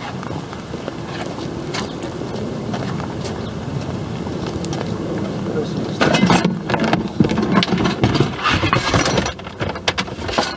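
Scrap metal, including rusty brake rotors, clanking and clattering as it is handled and loaded into a car, with a sudden run of knocks beginning about six seconds in. Before that, a steady rustling noise from someone walking while carrying it.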